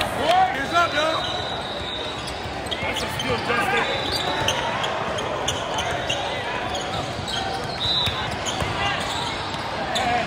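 Basketball game in play in a large gym: a ball bouncing, sneakers squeaking on the court, and players and spectators calling out. The voices are loudest in the first second.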